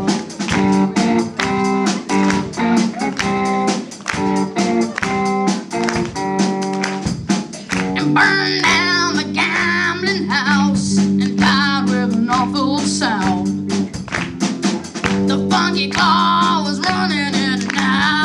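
Live rock band performing: drum kit keeping a steady beat under amplified electric guitar chords, with a high wavering melody line coming in about halfway through and again near the end.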